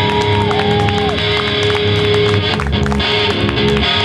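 Rock trio playing live: an electric guitar holds one long steady note over bass and drums, with drum hits throughout and a higher gliding note that drops away about a second in.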